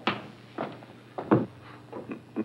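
Footsteps on wooden boards: a few separate knocks a little over half a second apart, the loudest just past a second in.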